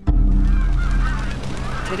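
A flock of geese honking over a deep, steady droning music bed that starts suddenly.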